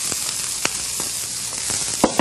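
Onion freshly added to a hot sauté pan with a little oil, sizzling in a steady hiss with a few small pops.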